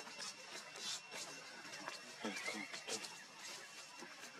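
Young macaques calling in short squeals and chatters, bunched together a little past the middle, among scattered small clicks.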